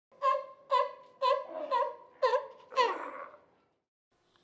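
A high-pitched voice laughing in six evenly spaced "ha"s, about two a second, the last one longer and falling in pitch.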